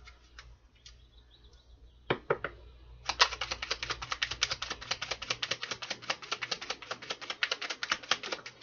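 A deck of tarot cards being shuffled by hand: a few scattered card taps, then about three seconds in a rapid, even run of card flicks, about eight a second, lasting some five seconds.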